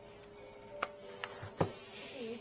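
A small cardboard box handled with gloved hands: a few sharp clicks and taps, the loudest near the end, over a faint steady buzzing hum of several held tones.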